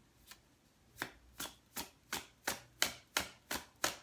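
A deck of tarot cards being shuffled by hand: one faint tap at first, then from about a second in a steady run of short crisp card slaps, about three a second.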